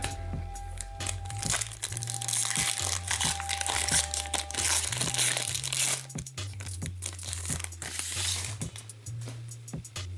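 Crinkling and rustling of a trading card pack and its cards being handled, heaviest in the first half, over background music with a steady bass line.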